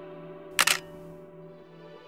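Quiet sustained background music tones, broken about half a second in by a single sharp camera shutter click, like a single-lens reflex firing.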